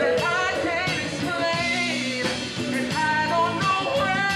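A man singing into a microphone with a live band, electric guitar and drums, behind him; his voice holds and bends long notes over a steady drum beat.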